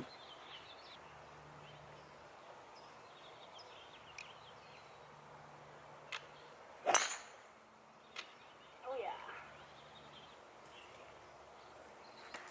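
A golf driver striking a teed ball: one sharp crack about seven seconds in that rings briefly, against quiet outdoor background. The golfer feels she did not hit it great but made square contact.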